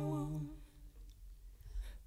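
Women's voices humming a held a cappella note, which stops about half a second in; a near-silent pause follows.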